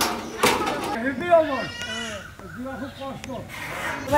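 Men's voices calling out to one another while corrugated metal roofing sheets are carried and passed up. A short metallic rattle of a sheet comes about half a second in.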